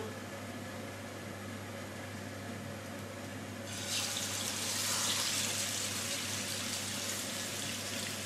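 Marinated chicken halves going into oil heated until very hot in a frying pan. A sudden hissing sizzle starts about halfway through and carries on steadily. Before it there is only a steady low hum.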